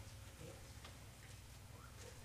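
Near silence: a low room hum with a few faint, light clicks from communion cups and trays being handled.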